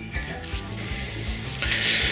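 Background music with a steady low beat. Near the end comes a brief rubbing scrape as the amplifier is handled on a wooden table.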